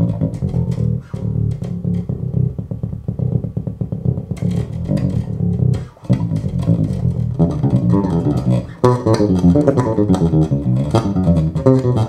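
Electric bass played through an ISI Bass-O-Matic three-way cabinet (10-inch woofer plus 8-inch coaxial driver with compression tweeter), heard in the room: a busy run of quickly picked notes with crisp attacks. There is a brief break about six seconds in, then the line moves higher and brighter.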